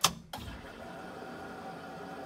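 Ignition key turned to on in a pickup's cab: one sharp click, then a steady electric hum as the truck's electrics power up, with the engine not yet running.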